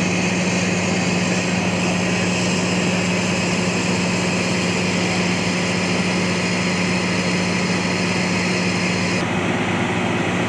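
Fire engine running steadily at a constant pitch while hooked to the hydrant supply hose, a loud continuous drone with hiss above it. The high hiss drops slightly about nine seconds in.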